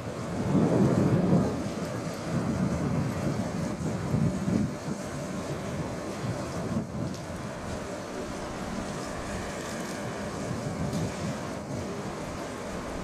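DE10 diesel-hydraulic locomotive's V12 engine running under load as it pulls a train of EMU cars slowly away, a deep rumble that swells in the first couple of seconds and again a few seconds in, with wind buffeting the microphone.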